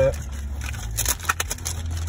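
A plastic poly mailer being torn open and crinkled by hand, with several sharp crackles about a second in.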